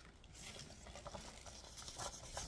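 Paper play-money banknotes rustling faintly as they are handled and counted out by hand, with small scattered flicks of paper.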